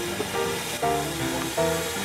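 Background music of held notes changing about every half second to second, over a steady hiss from the Stanley steam car's kerosene-type burner as its fuel is vaporised and blown through the nozzles.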